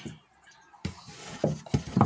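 Faint rustling and a few light knocks of hive parts being handled, after a brief near-silent moment.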